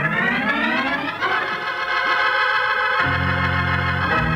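Organ music cue: a chord that climbs in pitch for about a second, then holds, with low bass notes joining about three seconds in. It is a radio drama's bridge music closing the scene.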